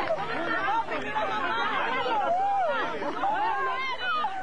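A small crowd of people all talking and calling out at once, many voices overlapping with high-pitched exclamations, as they greet and hug someone.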